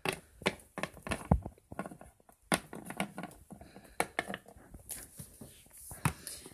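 Small plastic toy pet figures tapped and shuffled across a countertop by hand: irregular light clicks and knocks, several a second.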